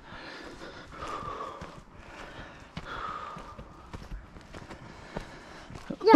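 Footsteps on a soft dirt and grass trail, uneven and irregular, with faint breathing near the microphone.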